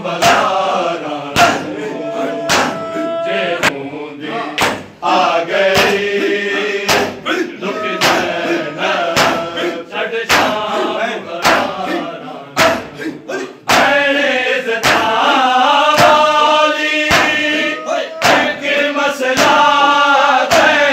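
A group of men chanting a noha (Shia lament) together, with loud, regular slaps of matam, hands striking chests, about once a second in time with the chant. The chanting grows louder and fuller about 14 seconds in.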